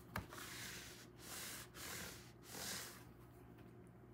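A faint click, then four soft hissing swells of a hand rubbing over the back of a clear stamp held in a stamping platform, pressing the freshly inked stamp onto the card.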